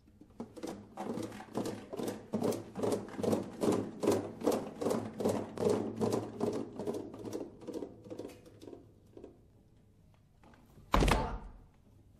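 Classical guitar ensemble playing a percussive passage: a steady run of short knocks, about three a second, that swells and then fades. Near the end comes one loud, sharp hit with a brief ring.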